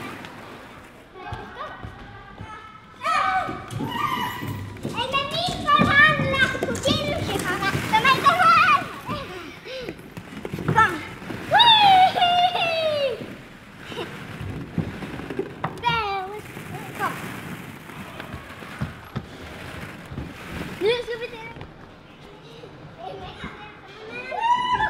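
Young children's voices shouting and squealing in play, busiest from about three to nine seconds in, with a loud, high, falling squeal around twelve seconds in and shorter calls later.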